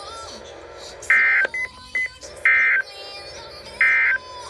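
Three short bursts of buzzing data tones, about 1.4 s apart: the SAME end-of-message code that closes an Emergency Alert System broadcast, played through a Midland WR-300 weather radio's speaker. Two brief beeps fall between the first and second bursts.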